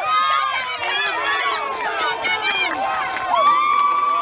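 Sideline spectators shouting and cheering, several voices overlapping as children run a play in flag football. Near the end one voice holds a long call.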